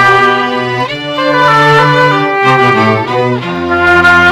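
Slow background music on bowed strings, with held chords that change every second or so.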